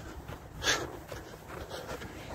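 A single heavy breath out from a man jogging, about half a second in, over a steady low rumble of the handheld phone moving.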